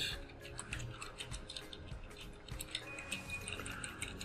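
Computer keyboard keys being typed: a quick, irregular run of faint clicks.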